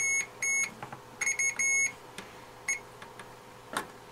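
Digital multimeter's continuity beeper sounding in short beeps, about five in the first two seconds and one brief chirp later, as a probe is touched to tantalum capacitor pads on a shorted circuit board. Each beep marks a pad connected to the ground test point. A light click comes near the end.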